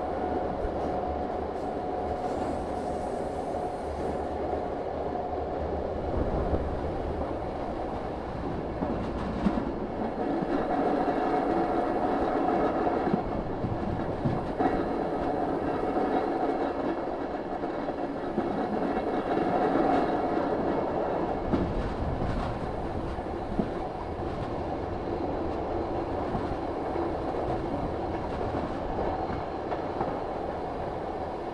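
Diesel train running along the track: a steady rolling rumble of wheels on rail, with occasional clicks from the track.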